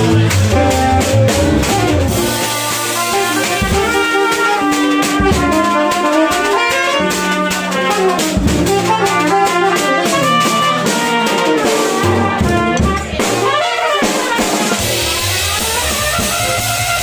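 Jazz combo playing at a fast tempo. A horn takes a solo of quick running lines that climb and fall, over a drum kit played close up with cymbal and drum strokes and a moving double-bass line.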